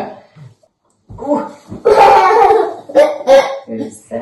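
A young child's loud, excited vocalizing in several bursts without words, starting about a second in after a short pause.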